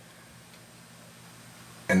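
Quiet room tone with a faint steady hum and no distinct handling sounds; a man starts speaking right at the end.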